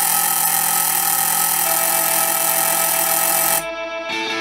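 Apartment doorbell ringing with a loud, steady electric tone while the button is held, cutting off suddenly after about three and a half seconds.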